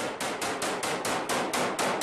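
A sustained burst of automatic rifle fire, a steady run of about seven shots a second.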